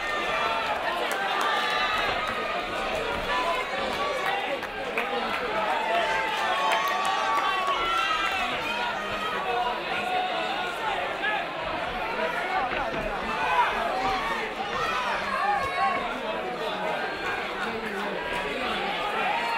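Crowd of boxing spectators shouting and calling out to the fighters, many voices overlapping at a steady level.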